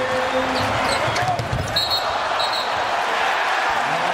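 Basketball game audio: a basketball bouncing on the hardwood court against steady arena crowd noise, with two short high sneaker squeaks about two seconds in.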